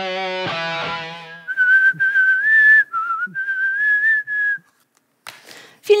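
Guitar background music ends about a second and a half in, followed by a short whistled tune of a few notes lasting about three seconds. A brief burst of noise comes just before the end.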